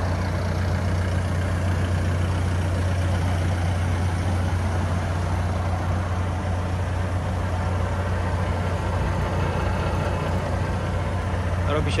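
2019 HAMM DV+ 70i VS-OS tandem asphalt roller's diesel engine idling steadily, a low, even drone.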